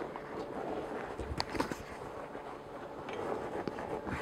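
Faint rustling and scuffing of a seat back cover being wriggled down over the foam of a car seat back, with a couple of light clicks about a second and a half in.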